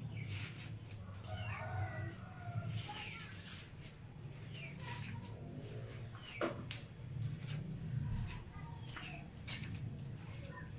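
Several short, high chirping animal calls, each falling in pitch, with a few sharp clicks over a steady low hum.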